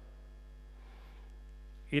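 Steady low electrical mains hum, unchanging, with faint higher hum tones above it.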